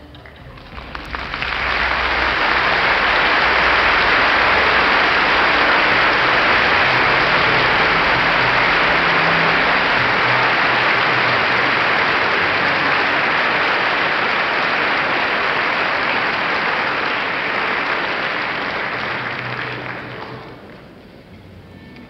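Audience applauding in a concert hall: a dense, even clapping that swells up about a second in, holds steady and dies away near the end.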